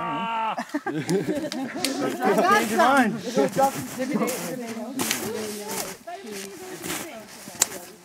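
Several people's voices talking and calling out indistinctly, busiest about two to three seconds in, with one sharp click near the end.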